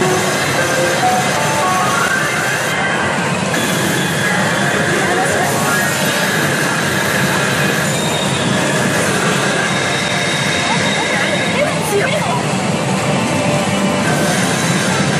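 Pachinko parlor din: a CR Ikkitousen pachinko machine playing music, sound effects and character voice lines during a reach sequence, over a loud, steady roar of the parlor's machines.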